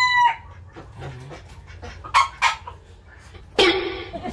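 A rooster's crow ending in a drawn-out falling note just after the start, followed by a quieter stretch with two short, sharp sounds about two seconds in and a louder burst near the end.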